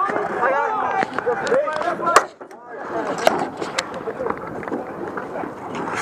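Dek hockey play: untranscribed voices of players and onlookers, with a few sharp clacks of sticks and ball, one about two seconds in and two more a second or so later.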